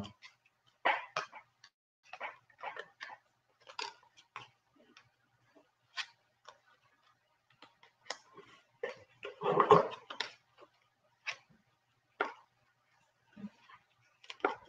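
Scattered soft clicks and taps of a computer mouse and keyboard during on-screen editing, with a brief voice sound about ten seconds in.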